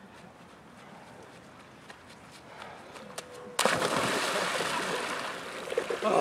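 A quiet stretch, then about three and a half seconds in, a sudden, loud, steady splashing of water as a bather moves in a hole cut in lake ice.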